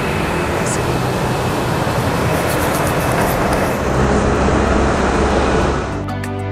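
Loud, steady background rumble and hiss with no clear rhythm or tone.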